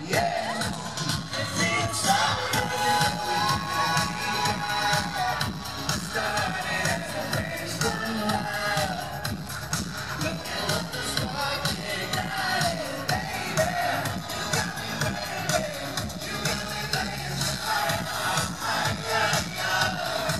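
Live pop music played loud through a concert PA, with a steady dance beat and sung vocals into microphones, and the audience crowd audible underneath.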